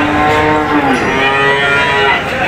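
Cattle mooing: two calls in a row, the first ending about a second in and the second pitched higher.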